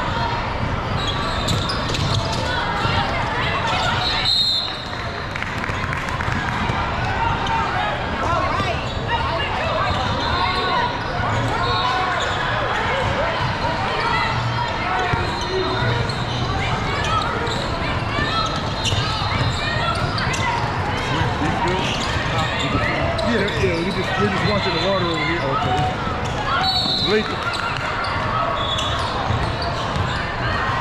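Basketballs bouncing on a hardwood court amid steady crowd and player chatter echoing in a large hall, with two short high-pitched tones, about four seconds in and again near the end.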